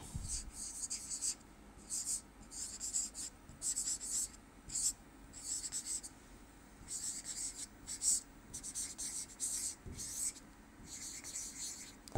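Handwriting: a dozen or so short, scratchy pen strokes in quick bursts with brief pauses between them, as words are written out.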